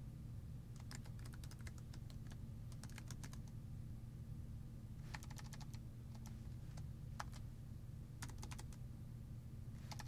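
Faint typing on a computer keyboard: keystrokes in short, scattered bursts with pauses between them, over a low steady hum.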